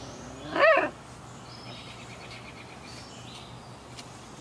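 A 37-day-old Samoyed puppy gives one short, high yelp that rises and falls in pitch, about half a second in. Birds chirp faintly in the background.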